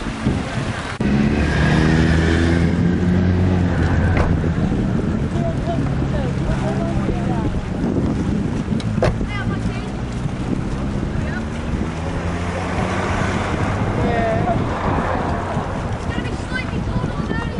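An engine running steadily at an even pitch, louder from about a second in and easing off a little past the middle, with wind noise and scattered voices.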